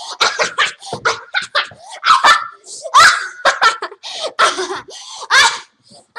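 A young girl laughing hard in a run of loud, high-pitched bursts with short breaks between.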